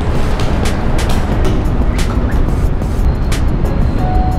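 Background music with a regular beat over a steady low rumble.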